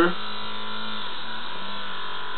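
Steady electric buzz from a running spinning-magnet coil motor (a Starship Satellite Coil induction setup), its pitch wavering slightly about halfway through.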